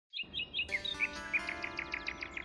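Birds chirping in a quick, even series of short descending chirps. About half a second in, a sustained musical chord enters beneath them.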